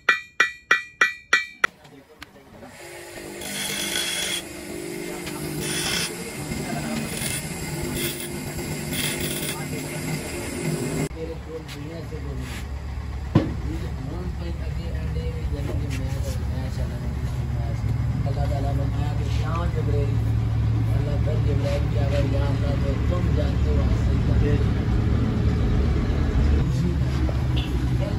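A hand hammer striking metal on a steel block, about eight quick ringing blows in the first two seconds. After that, a steady low rumble slowly grows louder, with a single sharp click partway through.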